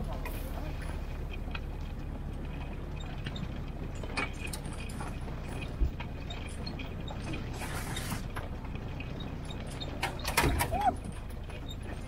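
Vintage military Jeep's engine running at low speed on a rough, stony forest track, with scattered knocks and rattles from the body and suspension and one sharp thump about six seconds in.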